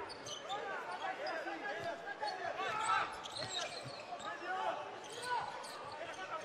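Court sound from a basketball game: the ball bouncing and many short sneaker squeaks on the hardwood floor, over a murmuring crowd.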